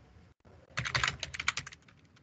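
Typing on a computer keyboard: a quick run of a dozen or so keystrokes lasting about a second.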